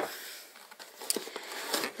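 Quiet rustling of cardboard and plastic packaging being handled while unpacking a camera box, with a few small clicks and taps.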